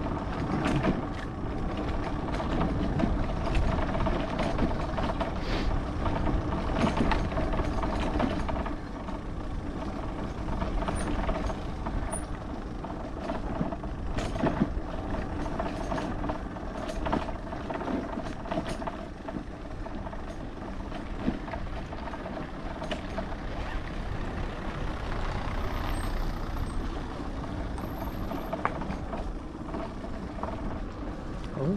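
Motorcycle engine running steadily at low speed on a gravel road, with tyre noise and scattered small clicks from the loose surface.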